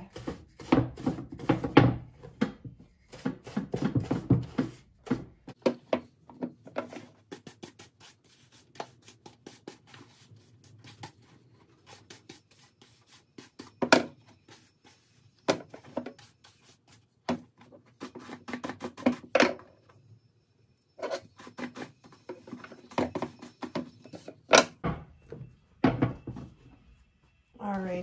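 Horsehair brush scrubbing over oil-tanned leather boots: quick scratchy strokes, dense at first, then in short spaced runs, with a few sharper single strokes about halfway through and near the end.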